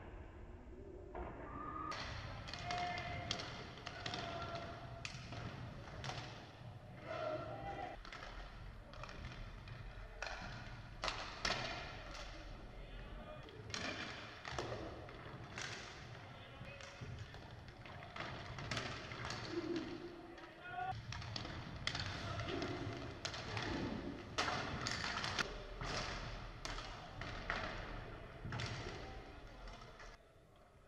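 Live sound of an inline hockey game in a large sports hall: many sharp clacks and thuds of sticks, puck and bodies against the boards, over scattered shouts from players and a low steady rumble.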